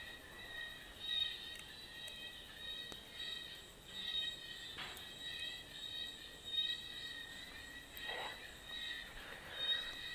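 Faint, steady high-pitched chirring of insects, pulsing evenly, with a few soft knocks.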